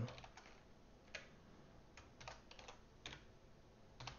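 Faint, sparse keystrokes on a computer keyboard as a short line of code is typed: a few scattered clicks, with a quick run of taps about two seconds in.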